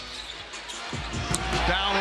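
A basketball being dribbled on a hardwood court, with a few bounces about a second in, over arena crowd noise that grows louder toward the end.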